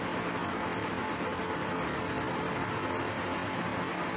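Steady background hiss with a faint, even hum underneath, unchanging throughout, like room noise from a fan or air conditioner picked up by the microphone.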